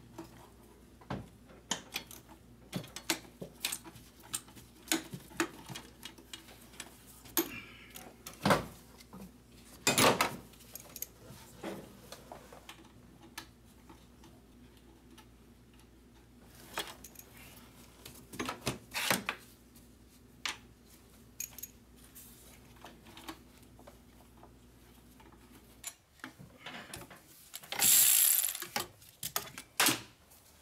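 Ratchet wrench clicking and metal tools clinking in scattered bursts as the bolts joining the turbocharger to the exhaust manifold are undone. A louder burst of noise about a second long comes near the end.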